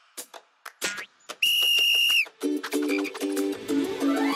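Cartoon soundtrack: a few light clicks, then a single held whistle note lasting under a second, then music comes in with steady sustained chords.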